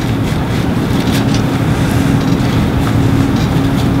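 Steady low rumbling hum with a faint held tone, the constant background noise of the recording, with a few faint ticks.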